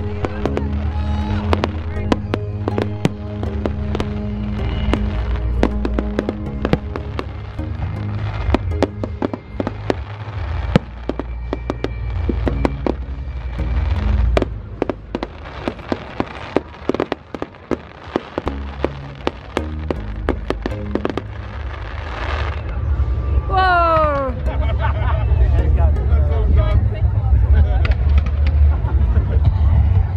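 Fireworks bursting and crackling in many sharp bangs, with music playing under them. About three-quarters of the way through there is a falling whistle, and the bangs grow louder near the end.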